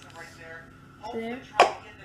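A single sharp knock on a hard surface about one and a half seconds in, as an object is set down in place.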